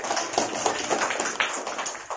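Applause: many people clapping together, dense and fast, dying away just after the end.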